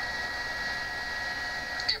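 A steady whine made of several fixed pitches, like a small electrical or machine hum, that starts abruptly and cuts off near the end as a voice begins.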